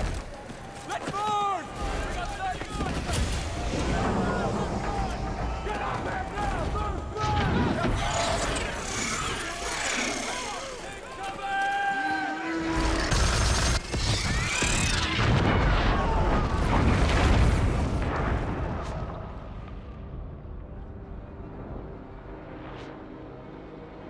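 Battle sound mix of a film: gunfire and explosions over shouted voices and score music. The fighting dies down after about eighteen seconds, leaving a quieter low rumble.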